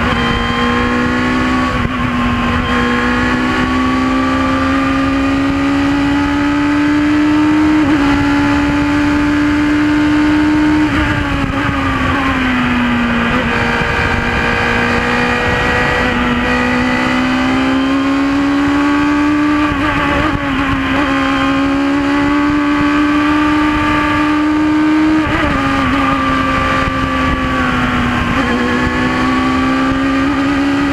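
Radical SR4 race car's engine heard from the open cockpit, running hard at high revs under acceleration, with wind and road noise. Its pitch climbs slowly and drops back twice, about halfway through and a few seconds before the end.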